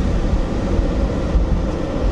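Steady low rumble of a car's engine and tyres on the road, heard from inside the cabin of the moving vehicle.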